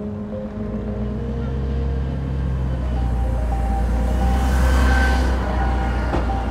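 A bus passing close by, its engine rumble and road noise swelling to a peak about five seconds in, over background music with sustained notes.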